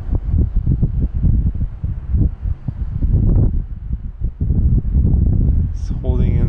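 Wind buffeting the microphone: irregular low gusts and thumps without any steady tone.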